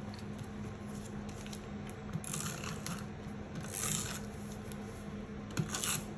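Paper and chipboard pieces being handled and slid over a paper layout: three short paper rustles, about two seconds in, about four seconds in and just before the end, with small taps between, over a steady low hum.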